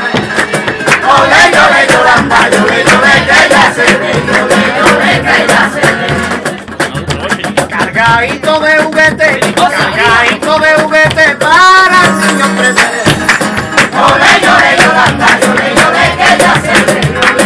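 Live group singing of a Spanish Christmas carol (villancico) with guitar and a steady, rhythmic percussive beat.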